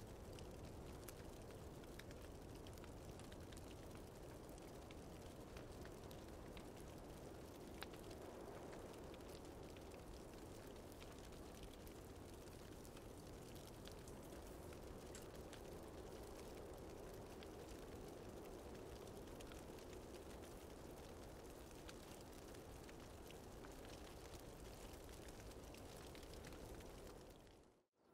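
Faint, steady low rush of small fires burning in grass, with occasional light crackles.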